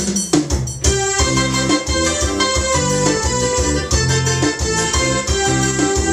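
Instrumental forró brega intro on an electronic keyboard. Drum hits come first; from about a second in, organ-like held chords and a melody play over a steady bass and drum rhythm.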